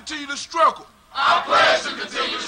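A group of voices shouting a chant in call-and-response, with a short pause about a second in before the next loud shouted line.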